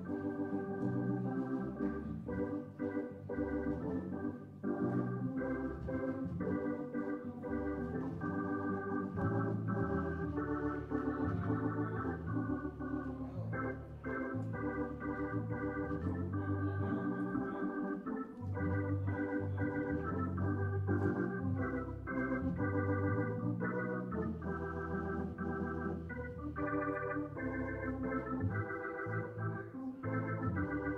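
Organ played live: sustained chords changing every second or so over a moving bass line.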